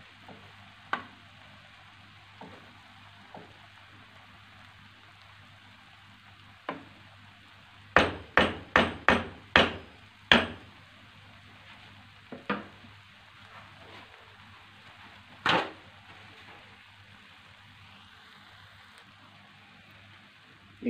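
A wooden spoon knocking against the rim and sides of a speckled nonstick pan while rice pilaf is stirred and fluffed. There are a few scattered single knocks, then a quick run of about six in the middle, and one more later, over a faint steady hiss.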